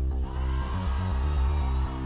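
Live band playing an instrumental passage of a dance-pop song: a pulsing bass line over a steady beat, with a long held high note coming in just after the start.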